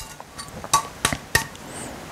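Light metallic clicks and clinks, about five sharp ones in the first second and a half, from a two-stroke expansion chamber exhaust pipe being handled.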